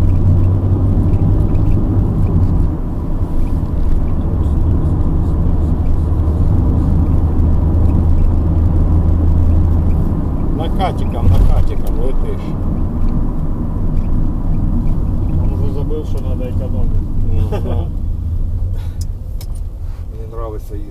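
Car engine and tyre noise heard inside the cabin of a moving car: a steady low drone that eases about halfway through, with a brief low thump soon after.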